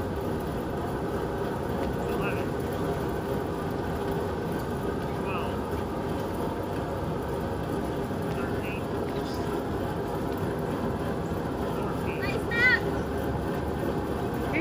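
Steady whirring rush of a large drum fan running, with a faint hum in it.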